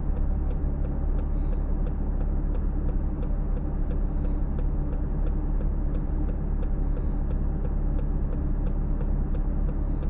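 A car idling at a standstill with a steady low rumble, its turn-signal indicator ticking evenly in the cabin about one and a half times a second.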